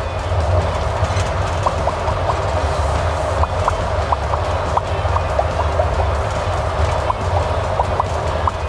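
Steady low road and engine drone inside the cab of a moving Fiat Ducato campervan, with scattered light, high clinks coming at irregular moments.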